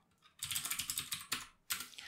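Rapid keystrokes on a computer keyboard: a run of typing starts about half a second in, pauses briefly, then resumes near the end.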